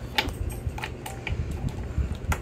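A few light, scattered plastic clicks and taps as a mini monster truck toy and its power key are handled on a wooden table.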